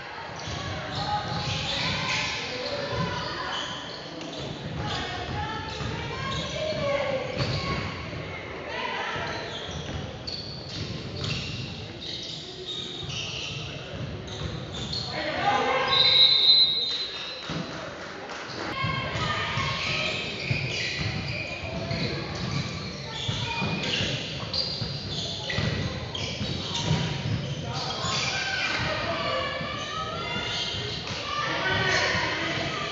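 Basketball bouncing on a hardwood gym floor during play, with indistinct voices echoing in a large hall. A short, high referee's whistle sounds about halfway through.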